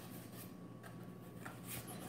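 Faint rubbing and scraping of a cardboard box being opened by hand, with a few soft scuffs.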